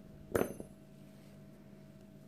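Metal scissors snipping shut on crochet yarn: one sharp metallic click with a brief high ring about a third of a second in, then a fainter click just after.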